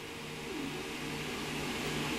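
Steady background hiss with a faint low hum: the room tone of a small room, with no distinct event.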